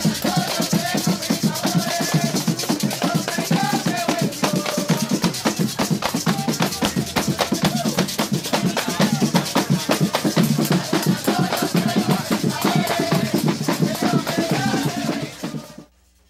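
Live Afro-Dominican festival music: hand drums played fast with a shaker, and a group singing over them. It cuts off abruptly just before the end.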